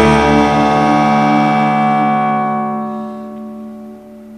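A band's final chord ringing out and slowly fading away over about three seconds, ending the song.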